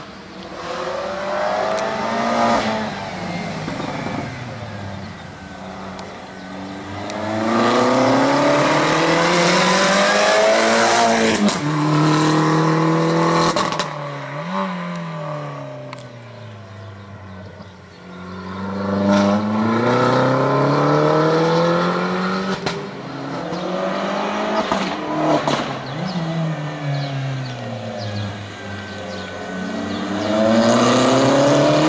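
Race-prepared Opel Corsa's engine accelerating hard and backing off again and again as it weaves through slalom cones, its pitch climbing and falling in repeated sweeps. It is loudest a quarter to halfway through.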